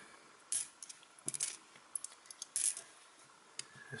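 Cupronickel 20p coins clinking against one another as they are handled and laid out by hand: a string of short, sharp, irregular clinks, about a dozen in all.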